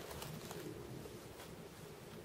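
Faint, low bird cooing in short repeated phrases, with a few soft clicks.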